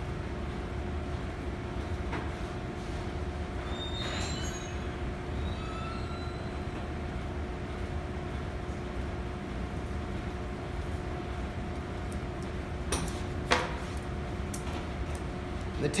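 Steady low room hum with two faint steady tones under it, with a few faint high squeaks about four to six seconds in and two sharp knocks near the end.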